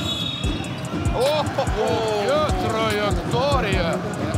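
Basketball bouncing on a hardwood court, short thuds about every half second, under a commentator's excited "oh, oh".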